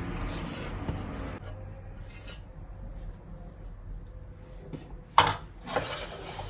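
Quiet handling noise with a single sharp knock about five seconds in and a smaller one just after.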